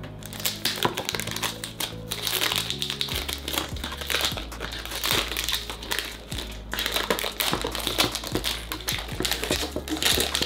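Packaging on a perfume box crinkling and crackling as it is opened by hand, over background music with slow, steady low notes.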